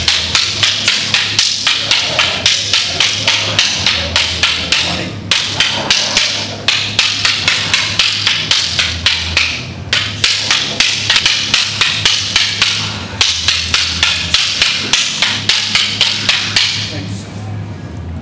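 Two wooden sticks striking each other in a rhythmic single stick weave drill, sharp clacks at about three a second with brief breaks every few seconds, stopping near the end.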